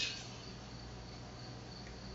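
Quiet room tone in a pause between sentences: steady microphone hiss with a low electrical hum and a faint, steady high-pitched tone.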